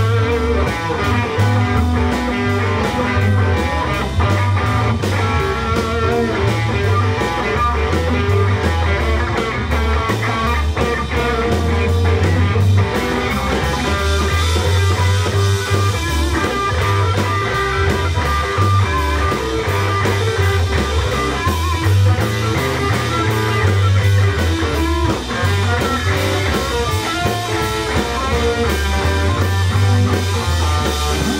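Live blues band playing an instrumental passage of a shuffle: electric guitars over bass guitar and drums, with no singing.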